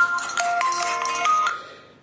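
Mobile phone ringtone playing a melody of clear electronic notes, stopping about one and a half seconds in as the call is answered.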